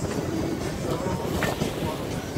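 Wind buffeting the microphone with a steady low rumble, on a sailboat under way at about five knots in a 10-knot breeze.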